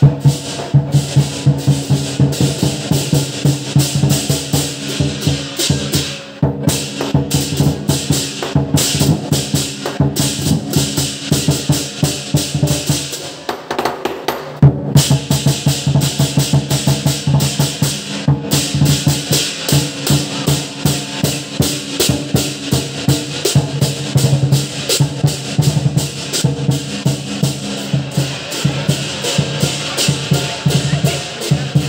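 Lion dance percussion: a Chinese drum with clashing cymbals and gong, beaten in a fast, driving rhythm. The beat drops back briefly about thirteen seconds in, then comes back in with a loud strike.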